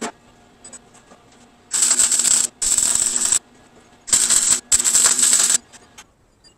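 Four short bursts of electric welding arc crackle, each under a second, starting and stopping sharply: tack welds joining a square steel tube to its steel base plate. A single click comes at the very start.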